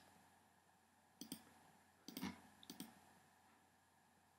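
Near silence broken by a few faint clicks from a computer being operated, in three short groups about a second apart.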